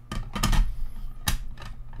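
Hard plastic graded-card slabs clacking and knocking as they are handled and one is set down: a few sharp clacks, with a heavier knock about half a second in and another sharp clack just over a second in.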